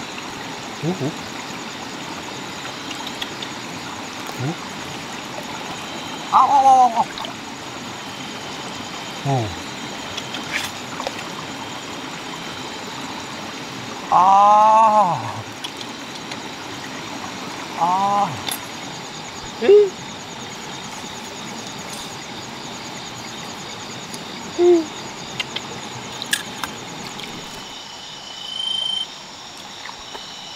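Frogs calling at night: about ten short calls at irregular intervals, the loudest about a third and halfway through. They sit over a steady background of running stream water and a thin, high insect drone.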